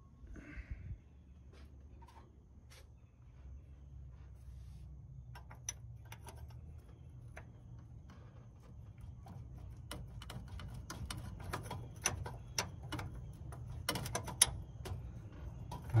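Light metallic clicks and taps of a flare wrench working a torch-heated, rusted brake-line fitting on a truck's master cylinder. The clicks grow more frequent from about a third of the way in and are busiest near the end, over a low steady hum.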